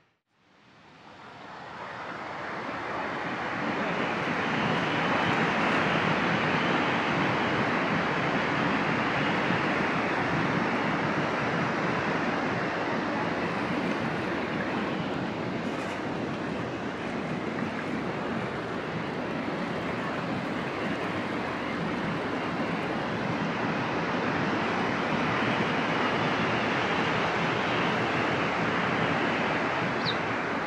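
Steady rush of white water from the Rhine Falls and the churning river below them, fading in over the first few seconds.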